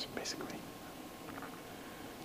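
Faint whispered, breathy speech in the first half second, then quiet room tone.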